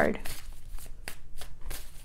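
A deck of tarot cards being shuffled in the hands: a quick, irregular run of soft card clicks and slaps.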